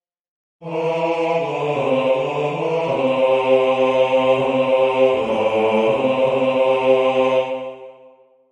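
Solo bass voice singing the closing phrase 'or utterly quell'd and defeated', starting about half a second in, stepping down in pitch and ending on a held low note that fades out near the end.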